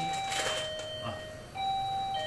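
Doorbell chime ringing a two-note ding-dong, a higher note falling to a lower one, sounded twice in a row. The second ding-dong starts about halfway through.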